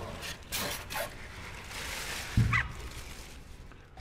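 Plastic wrapping rustling and a single low thump about halfway through as a small gasoline engine is handled and turned around on a workbench.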